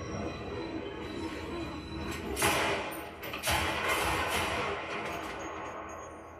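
Film soundtrack: music over a steady train-like rumble, with loud hissing surges about two seconds in and again a second later, fading toward the end.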